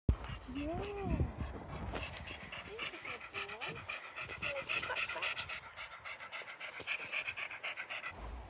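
A dog panting rapidly in a quick, even rhythm, mouth open and tongue out.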